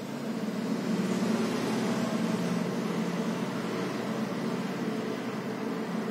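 A steady low machine hum with a noisy whir, getting a little louder about a second in and then holding steady.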